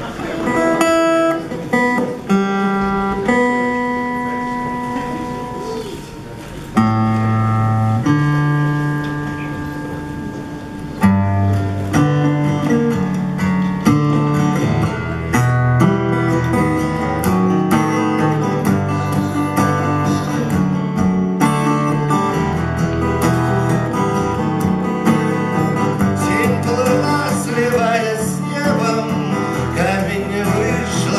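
Acoustic guitar played solo with no singing. It opens with a few long ringing single notes that fade away, then chords are struck about seven and eleven seconds in, and a steady picked pattern carries on after that.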